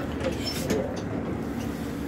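City bus interior: steady engine and road noise from the bus running.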